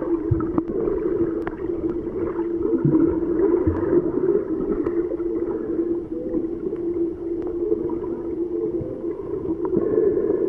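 Muffled underwater sound picked up by a submerged camera: a steady low hum with scattered clicks.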